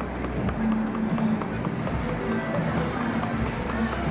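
Buffalo Ascension video slot machine playing its game music and spin sounds as the reels spin, a run of short held tones with small ticks over casino background noise.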